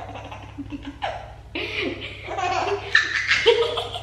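A baby laughing together with a girl's laughter.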